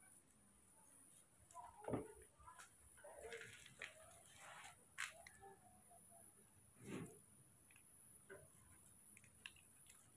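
Faint handling sounds: scissors snipping open a foil cat-food pouch, and the pouch crinkling as wet food is squeezed out of it, with a few soft clicks.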